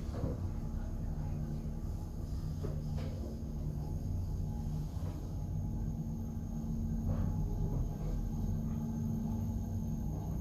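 KONE EcoDisc gearless traction lift travelling upward, heard from inside the car: a steady low rumble with a faint even hum and a few faint clicks.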